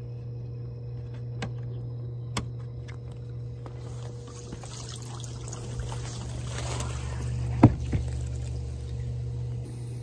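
Hot tub running: a steady pump hum under the sound of churning, bubbling water, which grows louder about four seconds in as the cover is lifted. A single knock comes about two-thirds of the way through.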